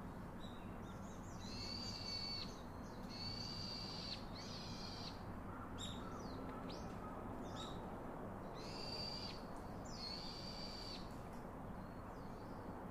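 A series of high, level-pitched animal calls, each about a second long, with a few shorter calls between them, over faint steady outdoor background noise.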